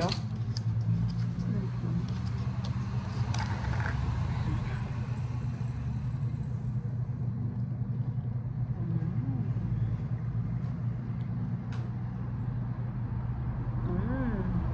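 A steady low mechanical hum, like a motor running, throughout, with a few light plastic clicks as a plastic gelatin cup's lid is picked at and worked open.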